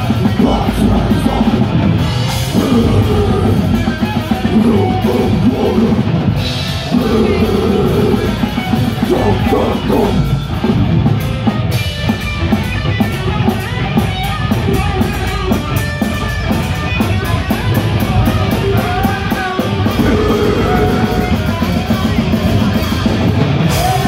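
Death metal band playing live and loud: distorted guitars and drum kit with fast cymbal strokes, and a vocalist singing into the mic over them.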